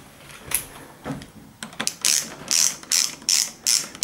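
Screwdriver turning the retaining screw of a euro lock cylinder in a UPVC door's edge. It gives a few faint clicks at first, then from about halfway in a regular run of short, high, rasping ratchet-like clicks about three times a second as the screw is driven home.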